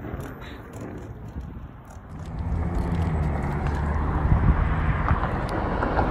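Bird electric scooter riding along pavement: a steady rumble of wheels and wind on the microphone, louder from about two seconds in, with a faint motor hum underneath.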